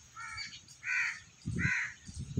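A crow cawing three times, each call short, with a low thud under the third.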